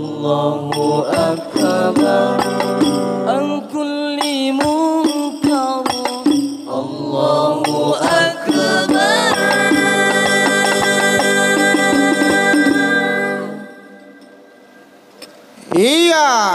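Hadroh Banjari ensemble performing sholawat: male voices sing together over beaten terbang frame drums, and the song closes on a long held note. The music stops about three-quarters of the way through, and the hall falls much quieter.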